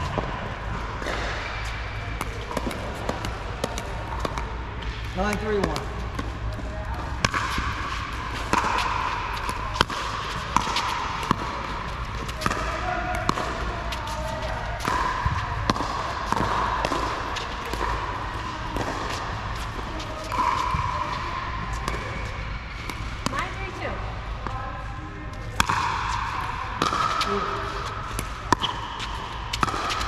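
Pickleball paddles striking the hard plastic ball in a doubles rally on an indoor court: several sharp pops, clustered about a third of the way in and again near the end. Indistinct voices carry underneath.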